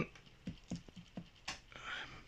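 A few light, irregular taps and patter as springtails and loose substrate are tapped off a piece of cork bark into a glass terrarium.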